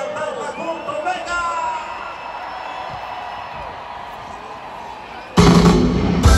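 Large concert crowd in a stadium, voices and shouts rising over a steady murmur, then about five seconds in a live band comes in suddenly and loudly with drums and bass as a song starts.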